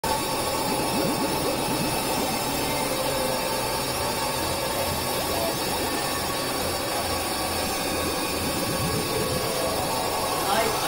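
Experimental noise music: a dense, steady wash of noise from several music tracks layered and processed together, with faint sliding tones running through it and no clear beat or melody.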